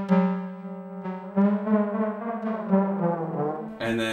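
Dreadbox Erebus analog synthesizer playing one long held note, triggered over MIDI from the Novation Circuit Tracks pads. Its tone shifts slightly in the middle and the note stops near the end.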